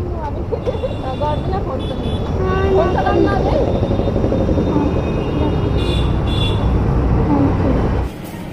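Street noise: a steady low rumble of road traffic, with people talking and laughing close by.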